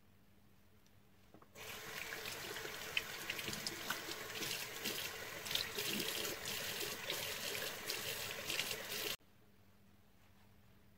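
Bathroom sink tap running, with water splashing as foam face cleanser is rinsed off by hand. It starts suddenly about a second and a half in and cuts off abruptly near the end.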